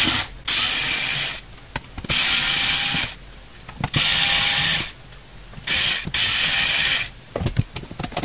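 Small cordless electric screwdriver whirring in four short runs of about a second each, backing out the screws of a computer power supply's steel cover. A few sharp clicks near the end.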